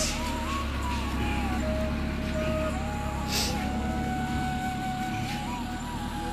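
A van's engine running as a steady low rumble, with a slow melody of thin, held notes playing over it.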